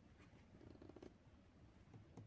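Near silence: faint background noise.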